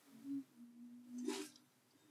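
A man's voice faintly humming one steady low note for just over a second, with a short breath near the end.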